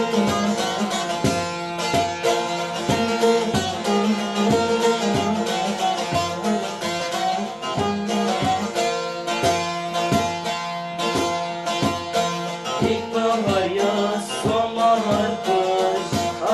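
Bağlama (Turkish long-necked saz) played with a pick: a quick, continuous run of plucked strokes over steadily ringing drone strings, in a Turkish folk style.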